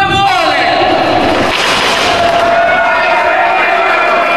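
Live wrestling crowd shouting and cheering, with a louder swell of cheering about one and a half seconds in.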